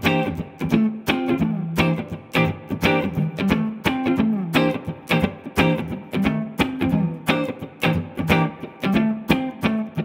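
Electric guitar played as a swung, funky rhythm groove of simple ninth chords, the strings struck in quick, evenly repeating strokes while the low note in the chord shapes moves between a few pitches.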